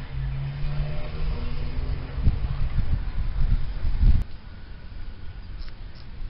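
A road vehicle's engine running with a low, steady hum that cuts off abruptly about four seconds in.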